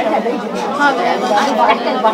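Only speech: several people talking over one another.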